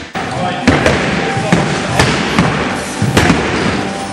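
Spring-loaded jumping stilts landing and pushing off on a sports-hall floor: a handful of sharp, irregularly spaced clacks and thuds over a steady noisy background.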